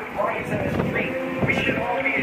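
People's voices talking, not clearly made out, with music under them.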